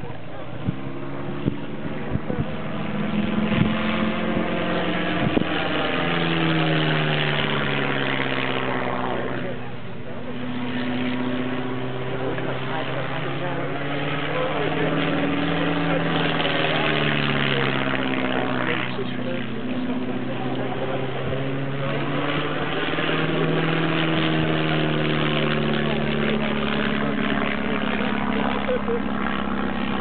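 A de Havilland DH82a Tiger Moth's four-cylinder Gipsy Major engine and propeller droning steadily, its pitch swelling and sagging every several seconds as the biplane climbs and dives through a series of loops.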